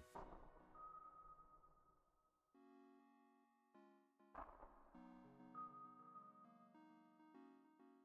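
Faint background music: soft sustained keyboard notes changing chord every second or so.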